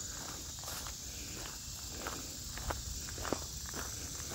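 Footsteps of a person walking over grass and a dirt track, with a steady high-pitched chorus of insects behind.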